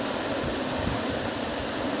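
Steady, even background noise like a running fan, with a few faint clicks.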